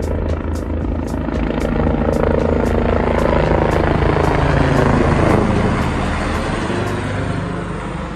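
Border Patrol helicopter flying low overhead: rotor beats and turbine whine swell to a peak about five seconds in, dropping in pitch as it passes, then fade as it moves away.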